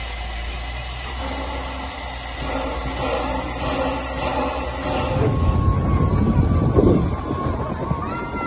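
Narrow-gauge steam locomotive 8A standing at the platform, releasing steam in a steady hiss. About five seconds in the sound changes to the low rumble of the train running over a trestle bridge, with a thin steady tone above it.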